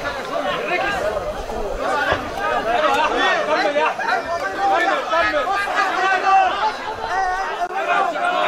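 Cageside spectators and cornermen shouting and talking over each other, many voices overlapping at once.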